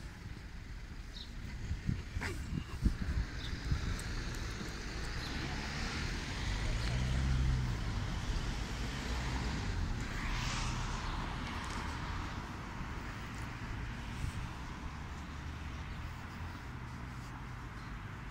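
Road traffic passing on the street beside the path: a steady traffic hum, with two cars swelling up and fading, about a third of the way in and again just past the middle. A few sharp knocks come in the first four seconds.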